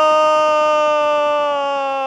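A male football commentator's long held goal shout: a single loud sustained note sliding slowly down in pitch.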